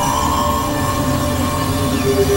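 Experimental electronic drone music from hardware synthesizers (Novation Supernova II, Korg microKORG XL): a held high tone over a rough, rumbling low drone, with an industrial, train-like grind.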